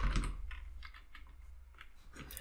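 Typing on a computer keyboard: a quick run of separate key clicks that thins out toward the end.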